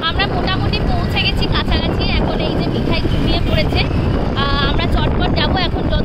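A woman talking over a steady, heavy wind rumble on the microphone from riding on a moving motorcycle.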